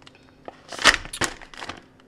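Thin plastic packaging bag crinkling in a few short bursts as it is handled.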